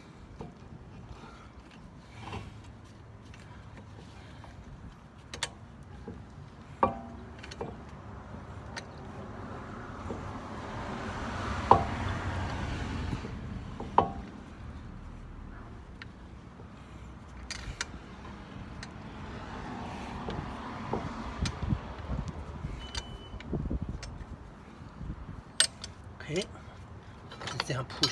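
Metal tool work on a disc brake caliper: the screw of a clamp-type piston compressor being turned to press the caliper piston back, with scattered sharp metal clicks and knocks. Rubbing and rustling swell up twice as a hand passes right by the microphone.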